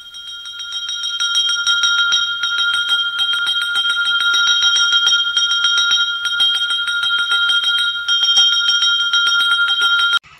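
Temple bell rung fast and without pause: a clear steady ring made of even strikes several times a second, swelling in over the first second or so and stopping abruptly at the very end.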